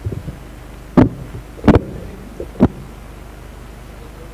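Handling noise from a live handheld microphone: three loud, dull thumps with some rubbing as it is shifted in the hands, about a second in, near the middle and a little later.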